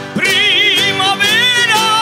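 Live Canarian folk music: a singer holds long notes with a wide vibrato over steadily strummed guitars. The voice breaks off for a moment at the start and comes back in a new phrase.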